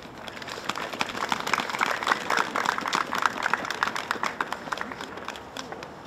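Audience applauding: a round of many hands clapping that swells over the first two seconds and then thins out and fades.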